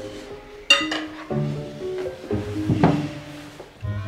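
Light background music of held notes, with cutlery clinking on plates at the table: one sharp, ringing clink a little under a second in and another near the three-second mark.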